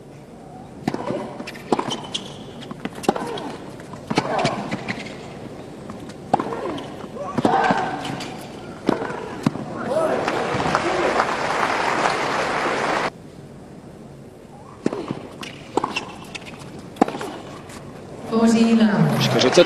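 Tennis rally on a hard court: a racket strikes the ball about once a second, with the players' grunts between strikes. Crowd applause swells around the middle and cuts off abruptly. Then another rally of racket strikes follows.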